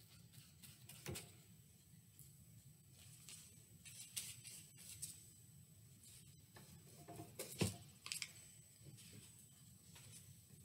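Near-silent room with a few faint taps and rustles: a paintbrush dabbing white paint through a paper doily onto craft paper. The clearest taps come about a second in and again around seven and a half seconds in.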